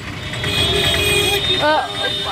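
A motor vehicle passing close by on the street: a low rumble that swells about half a second in and eases off near the end, with a voice coming in over it.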